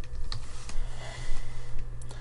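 Computer keyboard keystrokes: a handful of separate key clicks typing code, over a steady low hum.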